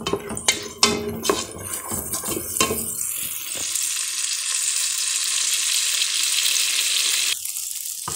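A wooden spoon stirring and knocking against a metal pot of vegetables frying in pork lard. About three seconds in, a steady sizzle of hot fat takes over, and it cuts off suddenly shortly before the end.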